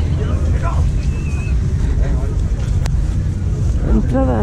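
Wind buffeting the microphone as a continuous low rumble, with people talking faintly nearby.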